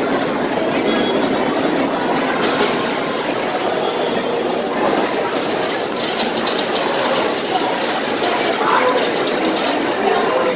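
Wooden roller coaster train rumbling and clattering along its track, a steady, dense rumble throughout.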